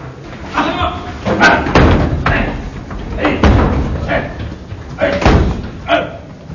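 Doors slamming several times, sharp loud bangs, amid men's voices.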